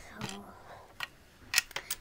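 A few sharp plastic clicks and knocks in the second second as a hand-held Lego brick candy machine is handled and turned over.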